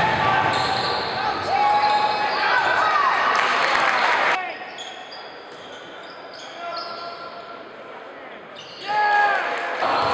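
Live sound of a basketball game in a gym: sneakers squeaking on the hardwood court, the ball bouncing and voices echoing around the hall. The sound turns quieter for about four seconds in the middle, then picks up again near the end.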